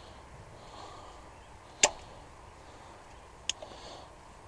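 Two sharp clicks about a second and a half apart, the first louder, from hand work on a rubber fuel hose and its clamp at the carburettor.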